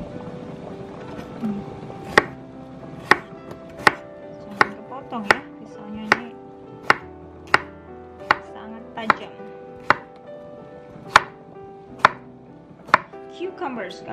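Chef's knife slicing a peeled cucumber on a wooden cutting board: about fourteen sharp knocks of the blade on the board, roughly one a second, starting about two seconds in.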